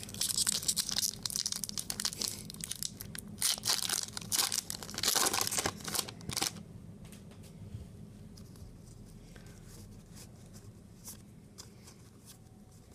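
Foil wrapper of a Magic: The Gathering booster pack being torn open and crinkled by hand, a run of tearing and rustling bursts over the first six and a half seconds. After that it goes much quieter, with only a few faint ticks.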